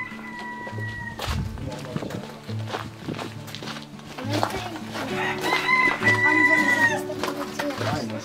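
Rooster crowing twice: one crow ending about a second in, and a louder, longer one from about five to seven seconds. Background music with a steady low beat plays underneath.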